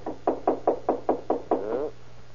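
A rapid run of about eight knocks, roughly five a second, like a fist rapping on a wooden door as a radio sound effect.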